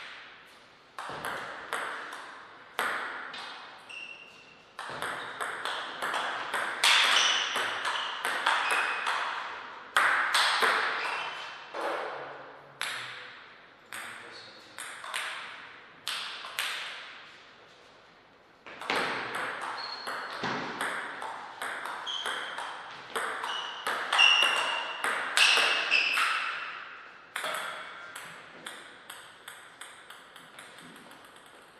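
Table tennis ball being hit back and forth between rubber paddles and bouncing on the table during two rallies. Each hit is a sharp click that rings out briefly in the hall, the clicks coming quickly in a long run and then a second, shorter one.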